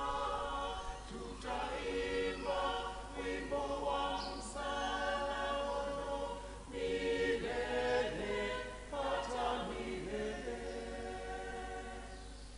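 A church choir singing a Swahili hymn in harmony, in sung phrases with short breaks between lines.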